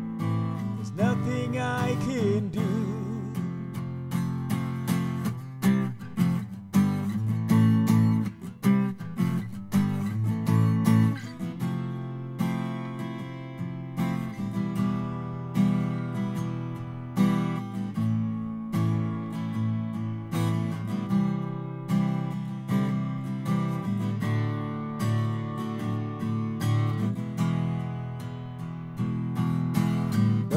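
Acoustic guitar strummed in steady chords through an instrumental break of a song. In the first few seconds a held sung note with vibrato fades out over the guitar.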